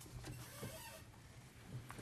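Faint room noise in a briefing room, with a soft rustle in the first second and a couple of small clicks near the end.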